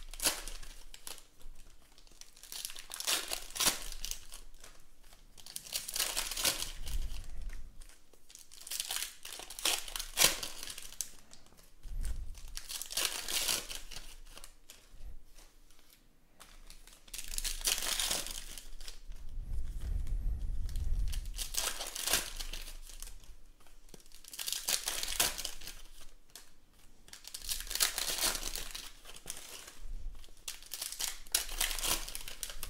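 Foil trading-card pack wrappers crinkling and tearing as packs are opened, in bursts every few seconds. There are a few soft low thumps between them.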